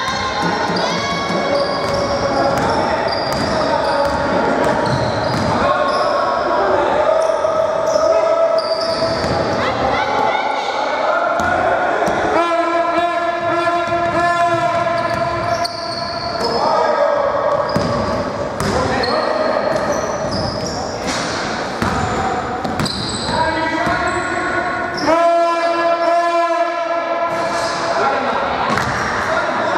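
Basketball being dribbled and bouncing on a hardwood gym floor, with voices echoing in a large hall. Two long held tones sound, one about halfway through and one near the end.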